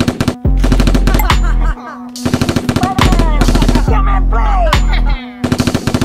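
Rapid automatic-gunfire sound effect, fired in long bursts with short gaps, over background music.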